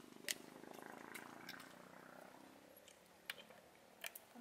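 Near silence, with a faint low hum for the first couple of seconds and two faint clicks, one just after the start and one near the end.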